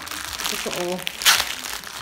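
Clear plastic soap packaging crinkling as it is handled, with one sharp, louder crackle a little past the middle.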